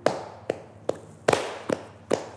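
Flamenco palmas sordas: two people clapping with cupped hands in a steady rhythm, about five muffled claps in two seconds, the loudest a doubled clap just past a second in.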